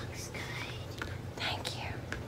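A woman whispering softly under her breath, in a few short hissy breaths of sound with no full voice.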